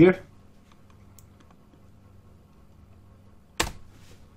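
A single sharp computer-keyboard keystroke about three and a half seconds in, with a faint tap or two before it, over a low steady hum.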